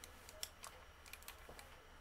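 Faint, irregular clicks and taps of long fingernails and the plastic cap against a small gel polish bottle as it is unscrewed and the brush is drawn out.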